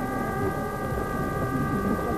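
A steady, high-pitched horn-like tone starts abruptly and holds at one pitch, over a low background murmur.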